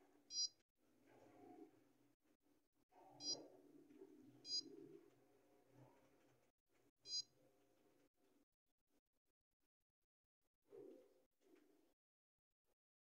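Key-press beeps from a Xerox WorkCentre 5755 copier's touchscreen control panel: four short, high beeps over about seven seconds, one for each tap on the screen, over faint low background noise.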